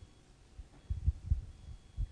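Irregular low thumps of handling noise on a handheld microphone as it is moved in the hand, starting about half a second in.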